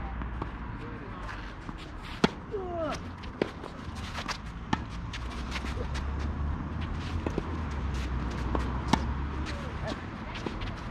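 Tennis rally: a ball struck by rackets and bouncing on the court, heard as sharp pops, the loudest about two seconds in and others near five and nine seconds.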